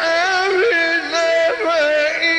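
A male Quran reciter's voice chanting in the melodic mujawwad style: a long, sustained melismatic phrase on a high held note, with quick ornamental turns in pitch about half a second in and again near the end.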